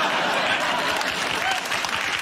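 Studio audience applauding and laughing at a joke, the applause easing off in the second half.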